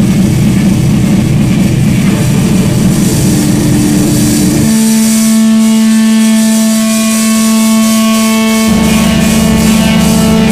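Loud live band music: a dense, distorted low drone that about halfway through gives way to a single sustained held note, with the low rumble coming back in near the end.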